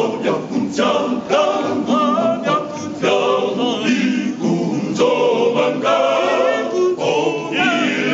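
A choir singing unaccompanied, several voices together in harmony with wavering held notes.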